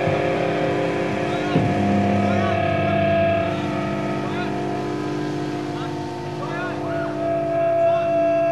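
Electric guitar and bass amplifiers droning on held, ringing notes with no beat, with short whistling glides of feedback over them, as a live punk song rings out. One sharp knock about a second and a half in.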